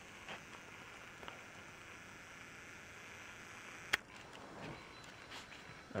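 Faint room tone with a steady hiss, and one sharp click about four seconds in.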